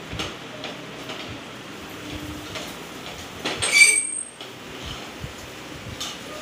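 Light clatter of cooking utensils at a stove, with one brief, loud, high-pitched metallic squeal about three and a half seconds in.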